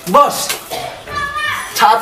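Speech only: a man calling out to another person.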